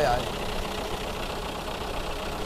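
Used dump truck's engine idling steadily, heard up close in the open engine bay. The seller says the engine has blow-by (đổ hơi), which he says a new set of bạc will cure.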